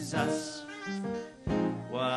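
Live gospel praise music: a woman singing into a microphone over keyboard and band accompaniment, with a brief dip in loudness about three-quarters of the way through.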